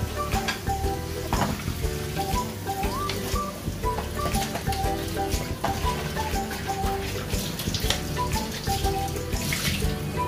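Background music with a light melody over a pot of water at a rolling boil, bubbling, with louder sloshes about a second and a half in and near the end as a whole chicken is turned in the broth.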